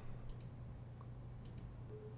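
Faint computer mouse clicks, two or so quick press-and-release pairs, over a low steady hum.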